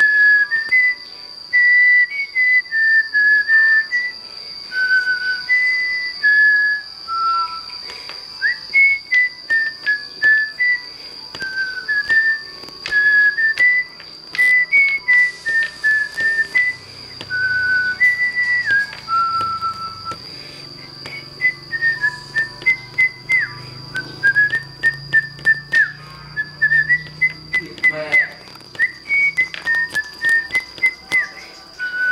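A simple tune whistled one clear note at a time, with short slides up or down between some notes. A steady high-pitched whine and scattered light clicks run beneath it.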